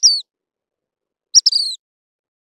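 Dark-sided flycatcher calling: short, high, thin notes that drop slightly in pitch. There are two calls about a second and a half apart, the second led by a brief clipped note.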